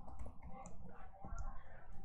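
Faint computer keyboard keystrokes: a handful of soft, irregular key clicks as a command is typed.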